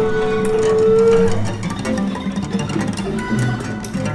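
Small free jazz group improvising live: a wind instrument holds one long steady note for about the first second and a half over plucked balalaika and electric bass-guitar notes, and then the plucked strings carry on alone in a loose, shifting line.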